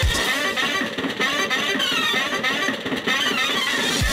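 Background music: a guitar passage with the bass beat dropped out, the beat coming back in right at the end.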